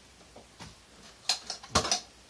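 A quiet stretch, then a short cluster of clattering knocks past the middle: a metal can being handled and set down on a wooden table.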